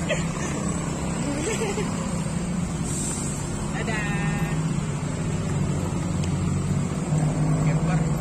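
Road traffic engines (cars, motorcycles and buses) running as they crawl through a bend, making a steady low drone, with faint voices of people nearby.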